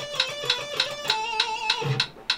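Electric guitar playing a fast run of single notes, then ending about a second in on one held note, over a metronome clicking at 200 beats a minute.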